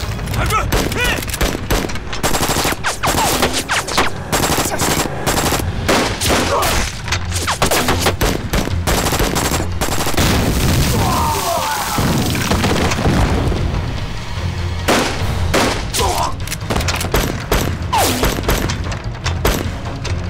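Heavy battle gunfire from rifles and a machine gun: many shots in quick succession throughout, some in rapid bursts.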